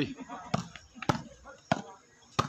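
Volleyball struck by hand during a rally, three sharp hits about half a second apart.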